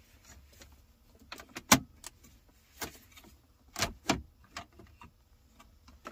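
Plastic clicks and knocks from a roller blind trim piece being pushed and worked into a car's center console cup holder opening: several separate sharp clicks, the loudest about two seconds in.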